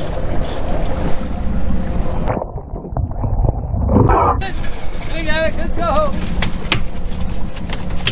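Boat engine running steadily under a rush of wind on the microphone, the sound going duller and quieter for about two seconds in the middle.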